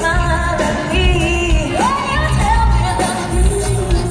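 Live pop concert music: a vocal line with sliding, held notes over the band, with heavy bass, heard from the audience in an arena.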